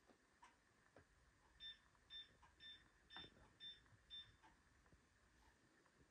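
Six short electronic beeps at one high pitch, about two a second, with faint clicks around them.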